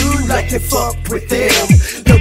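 Hip hop track with a heavy 808 bass and rapped vocals. Near the end the bass slides sharply down in pitch and the beat briefly drops out.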